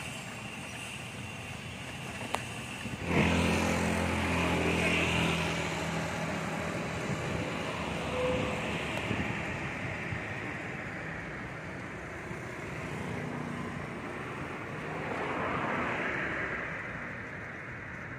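A motor vehicle passes close by about three seconds in: a sudden loud engine note that fades away over a few seconds. A second vehicle swells up and passes near the end, over steady street traffic noise.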